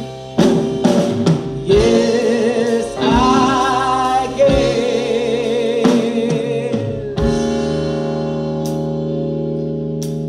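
Live soul-blues band playing a slow number: a female singer holds long notes with vibrato over electric guitar, keyboards, bass and drums. A drum hit about seven seconds in leads into a sustained chord.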